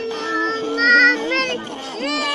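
A high singing voice with music, holding long notes and sliding between pitches.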